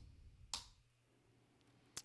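Near silence, broken by one short, sharp click about half a second in and a faint tick near the end.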